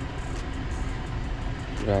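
Steady low background rumble, then near the end a recorded auto-attendant voice from an intercom call box begins saying "dial zero for our attendant."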